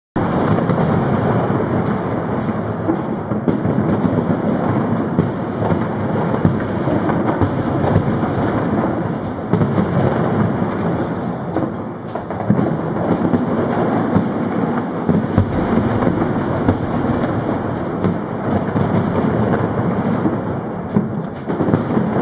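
Fireworks going off in quick succession: a continuous rumble of booming bursts with many sharp cracks and crackles throughout.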